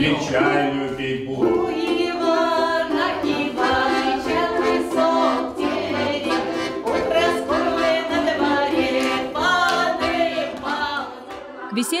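Several women's voices singing a Russian folk praise song (velichalnaya) together, starting right away and carrying on steadily until a narrating voice cuts in just before the end.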